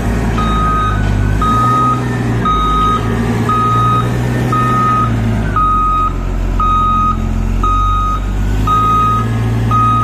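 Hyster reach stacker's back-up alarm beeping steadily, about one half-second beep every second, over its diesel engine running underneath. The engine's pitch shifts a few times as the machine moves with a container raised.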